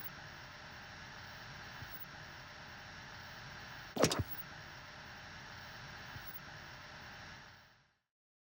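Steady low hiss with one sharp click about four seconds in, fading out near the end.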